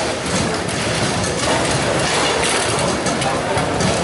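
Steady din of a busy foosball tournament hall, with scattered knocks of balls and rods from tables in play.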